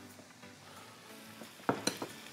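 Two quick knocks close together near the end, a wooden spoon striking the frying pan, over faint steady background music.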